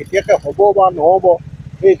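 A man talking into an interview microphone, with a steady low rumble underneath.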